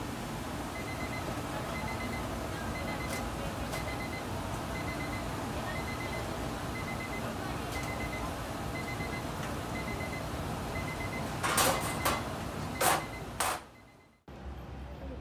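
A digital kitchen timer beeping about once a second over a steady hiss and hum from a steaming stainless steel cooker and its vent hood. Near the end come three or four loud clanks of a steel cooker lid being handled.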